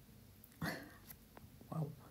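Quiet pause with a breath, two light clicks of a stylus on a tablet, and a brief voiced hum near the end.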